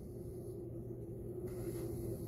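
Quiet room tone: a low steady hum with no distinct events.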